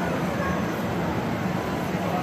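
N scale model freight train running along the layout track, a steady low rumble mixed into the even background noise of a busy exhibition hall.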